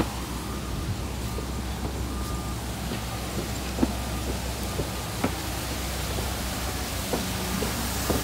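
Steady rush of a rock waterfall cascading into a pond, under a low hum, with a faint repeated beep early on and a few light knocks.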